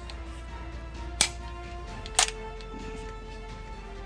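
Background music with steady held notes, broken by two sharp clicks about a second apart from handling a Springfield Saint Victor AR-15 rifle.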